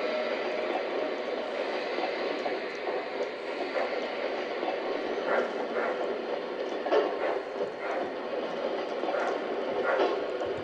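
MTH O-gauge model of a C&O Allegheny steam locomotive running slowly on three-rail track, its built-in sound system giving a steady steam hiss. A few sharp clicks come through in the second half as the wheels cross rail joints and switches.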